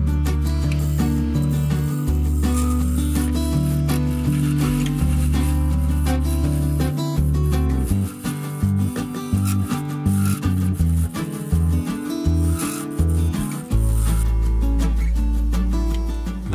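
Background music with a low bass line that steps between held notes every second or two.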